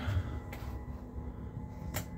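A few light knocks and clicks of handling noise as motorhome dinette parts are moved to turn it into a sofa.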